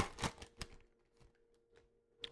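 A few faint crinkles from a foil trading-card pack being handled and opened, within the first moment, then near silence with a faint steady hum.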